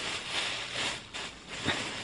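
A plastic shopping bag rustling as it is handled, with one short knock near the end.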